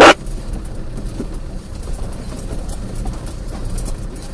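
Off-road vehicle's engine running at a slow crawl over a rocky track, a steady low rumble, with a brief click at the very start.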